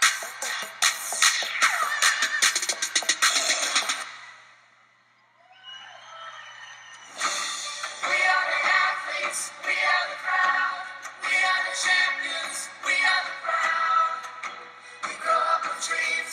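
Upbeat pop backing track with a steady beat. About four seconds in it drops away to near silence, a brief gliding electronic sound follows, and the beat comes back in about seven seconds in.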